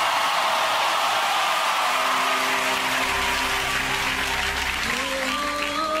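Studio audience clapping and cheering. About two seconds in, steady held notes of music come in under the applause, a low bass note joins a second later, and a voice begins singing near the end as the live song starts.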